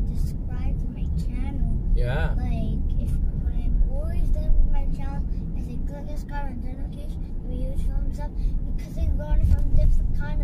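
Steady low rumble of a car driving, heard from inside the cabin, with voices talking over it.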